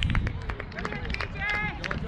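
Several excited voices shouting and cheering over one another just after a goal is scored, with wind rumbling on the microphone.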